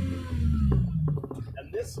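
Small SUV engine heard from inside the cabin, its steady drone dropping off and falling in pitch as the revs come down.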